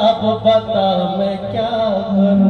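A man singing a drawn-out, wavering devotional chant over a steady harmonium accompaniment.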